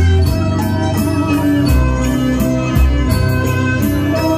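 Electronic keyboard playing an organ-voiced melody over a bass line and a steady beat, heard through PA speakers.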